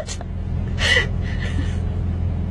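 Steady low hum of a car inside its cabin, with a person's short breathy gasps of laughter about a second in and again just after.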